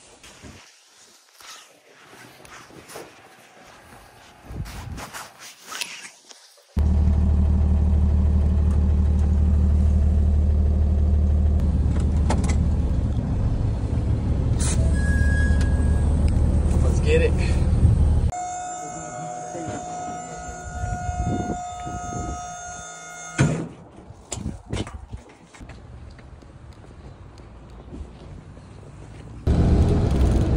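Truck engine running, heard inside the cab as a loud, steady low drone that cuts in suddenly several seconds in and stops abruptly about eleven seconds later. Before it there are quiet clicks and handling noises, and after it several steady high tones sound for a few seconds over faint knocks.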